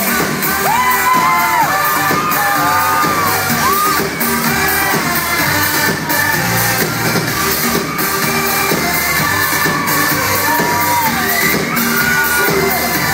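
A boy band's dance-pop song played live through a concert hall's PA, with a steady beat and sung vocals, recorded from inside the audience with fans screaming and singing along.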